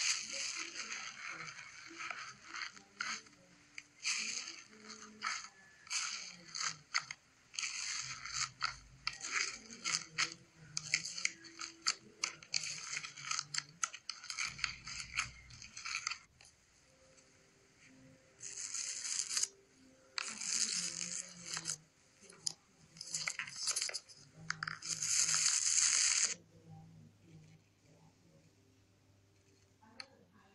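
Fingers pressing and squishing bubbly, air-filled slime: a dense run of small crackling pops and clicks as the bubbles burst, then four longer hissing squelches of air pushed out of the slime about two-thirds of the way through, after which the sound stops.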